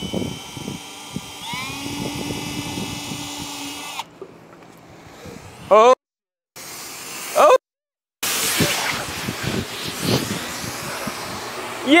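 Cordless drill running as the bit bores into a lithium-ion pouch cell, its pitch rising about a second and a half in and stopping about four seconds in. In the last few seconds a steady hiss as the punctured cell swells and vents gas.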